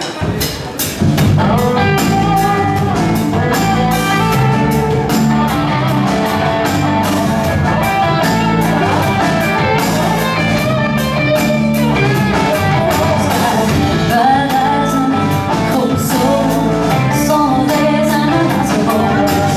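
Live band starting a song about a second in: electric guitars, bass, Hammond B3 organ, piano and drums playing together, with regular drum hits and a tambourine filling in.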